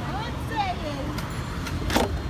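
Car running, with a low engine and road rumble heard from inside the cabin and voices over it. A single sharp knock comes near the end.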